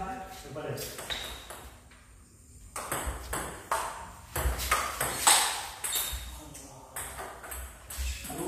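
Table tennis rally: a ping-pong ball clicking sharply off rubber paddles and the table in quick back-and-forth exchanges, with a short lull about two seconds in before a run of rapid hits.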